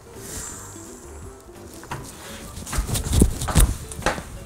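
A person chewing a mouthful of meat-filled flatbread over quiet background music, with a few short soft knocks about three seconds in.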